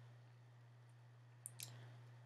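Near silence over a low steady hum, with two faint quick clicks about a second and a half in.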